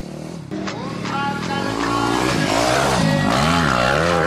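Enduro dirt bike engine revving up and down repeatedly, its pitch rising and falling several times and getting louder toward the end.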